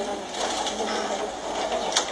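Indistinct murmur of many people in a hearing room during a vote count, with a few faint clicks.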